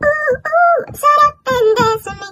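A woman singing a few short phrases a cappella, with held notes that bend in pitch. The video is sped up, which raises her voice.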